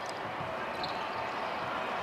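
A basketball being dribbled on a hardwood court, faint knocks over a steady hum of arena ambience.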